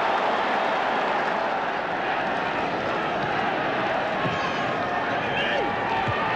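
Football stadium crowd cheering after a goal, a steady wash of many voices and clapping, a little louder in the first second.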